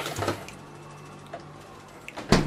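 Quiet room tone with a steady low electrical hum. A brief soft handling noise comes just after the start, and a faint click about one and a half seconds in.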